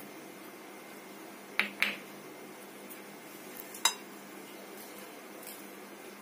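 A few light clinks of small spice bowls being handled and set down on a hard kitchen counter: two close together about a second and a half in, another sharper one near four seconds, with fainter taps between.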